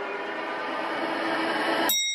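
Static-like hiss from a music video's intro, a noisy sound effect with faint steady tones, slowly growing louder. Near the end it cuts to a brief cluster of steady high tones.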